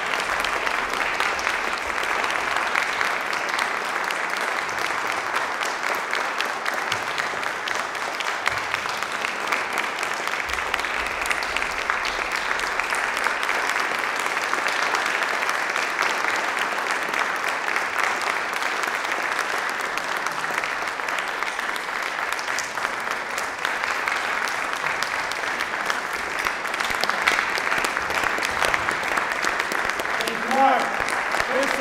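Audience applauding, a steady, unbroken round of clapping.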